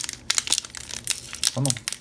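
Foil Pokémon booster-pack wrapper crinkling and crackling in the fingers as its crimped top seam is pulled at; the pack is stubborn and not tearing open easily.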